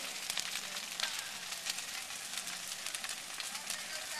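A large bonfire of brush and dry branches burning, with a steady crackle of many small snaps and pops over a hiss of flame.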